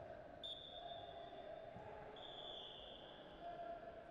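Two blasts of a wrestling referee's whistle restarting the bout, each about a second long, on one steady high pitch.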